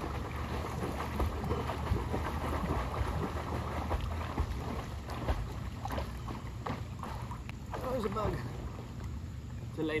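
Water splashing and churning irregularly as a swimmer kicks his legs across a pool while holding an inflatable float, with wind rumbling on the microphone. A short vocal sound comes about eight seconds in.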